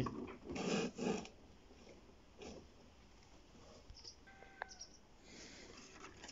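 Burned copper wire bundles rustling and scraping against a cardboard box as they are handled, in a few short bursts, the loudest about a second in.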